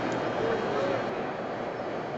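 Indistinct crowd chatter and steady background noise in a large hangar, with a low hum that stops about a second in.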